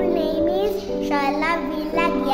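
A young child singing, with instrumental music of long held notes behind the voice.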